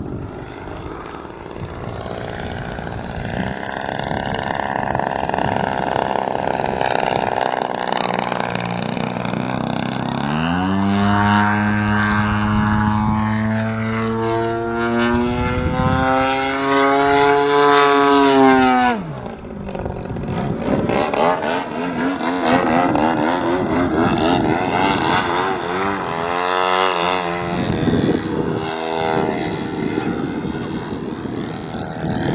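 Extreme Flight Extra radio-controlled aerobatic plane flying overhead, its propeller drone climbing sharply in pitch about a third of the way in. It holds high and loud for about eight seconds, then drops off abruptly. After that the pitch wavers up and down as the plane manoeuvres.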